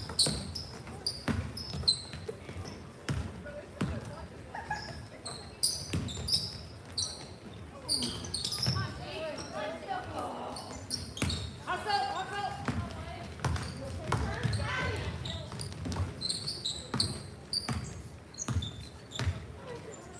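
Basketball game play in a large gym: a ball bouncing on the hardwood floor in a string of sharp knocks, short high sneaker squeaks, and indistinct voices calling out, busiest in the middle of the stretch.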